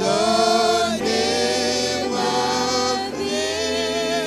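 A man singing a slow hymn into a handheld microphone, holding long notes with vibrato, with a new phrase about every second.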